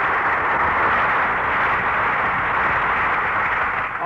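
Studio audience applauding steadily, heard on an old broadcast recording.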